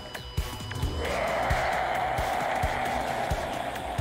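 Background music with a steady low beat; a sustained chord swells in about a second in.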